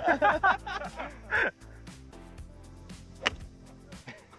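Men laughing and talking, then background music with a single sharp crack about three seconds in: a golf club striking the ball on a low stinger shot.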